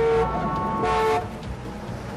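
Car horn honking twice: a blast ending just as the sound begins, then a second short blast about a second in, followed by a low steady rumble.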